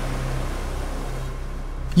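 Tail end of the intro background music fading out: a sustained low note and a dying wash of higher sound, with no beat.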